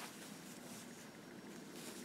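Faint rustling of wool yarn and a tunisian crochet hook being handled as stitches are worked, over a low steady room hum.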